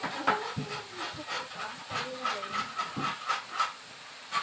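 Meat sizzling in pans on portable tabletop gas stoves, with repeated sharp clicks and clatter of metal tongs and utensils against the pans.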